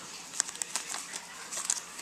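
Thin clear plastic sleeve crinkling as it is handled, a few faint, irregular crackles.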